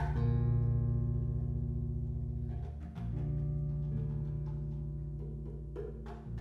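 Electric bass played through an amplifier, holding long low notes: one rings through the first half and a new note starts about three seconds in. A few faint percussion taps sound over it.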